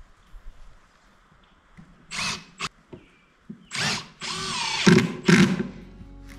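Cordless drill driving screws into plywood: a few short bursts of the motor, then longer runs from about four seconds in, its whine rising and falling as the screws bite.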